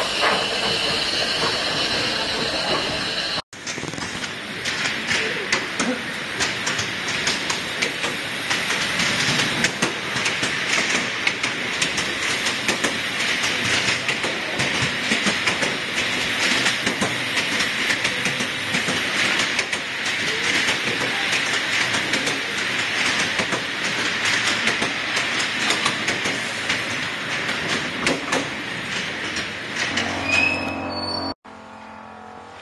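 Steam hissing from a heritage steam train. After a break about three and a half seconds in, the train rolls slowly on with a steady hiss and an irregular clickety-clack of wheels over the rail joints.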